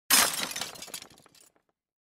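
Glass shattering: a sudden loud crash just after the start, followed by scattered tinkling fragments that die away within about a second and a half.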